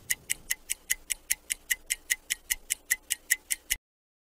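Rapid, even clock-like ticking, about five ticks a second, which cuts off abruptly near the end.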